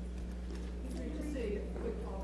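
Faint, indistinct voices over a steady low electrical hum, with a few faint clicks.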